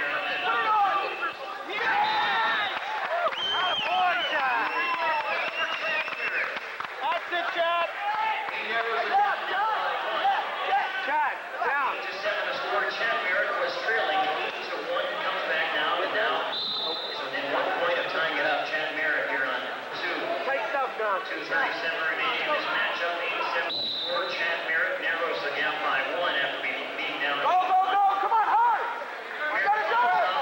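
Many people's voices in a gymnasium, talking and calling out over one another without a break, with a few short high steady tones standing out above them.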